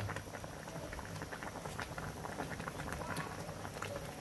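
Pork broth with pechay boiling in a pan, a dense, even run of small bubbling pops.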